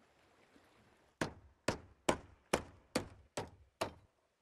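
A hammer driving nails into wooden boards: seven sharp, even blows, about two a second, starting a little over a second in.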